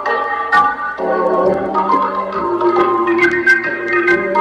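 Organ playing a melody over sustained chords, with short sharp ticks from the accompaniment every so often.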